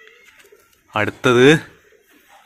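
A man's voice: a short, loud utterance about a second in, the words not made out.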